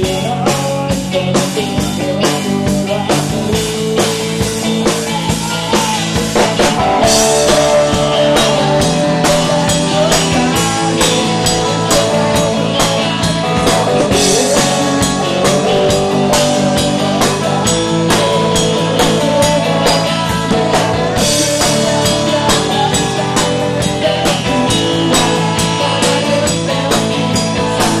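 Live rock band playing electric guitars over a steady drum-kit beat, with a man singing into a microphone. Cymbal crashes come in about a third of the way through, again around halfway, and near the end.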